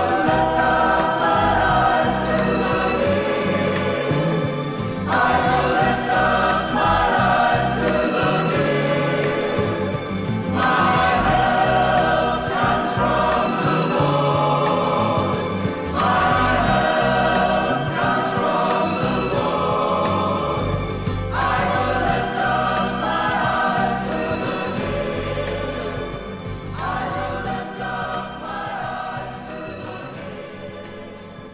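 Choir singing a scripture song in phrases of about five seconds each over instrumental accompaniment, fading out gradually near the end.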